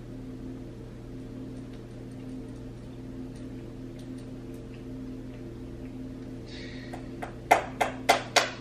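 Steady low electrical hum of a quiet room. Near the end comes a quick run of five or six sharp clicks or taps.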